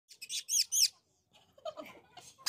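A small bird chirping: three quick chirps, each falling in pitch, in the first second, with fainter sounds near the end.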